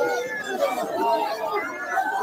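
A crowd of people talking and calling out at once, many voices overlapping with no pause.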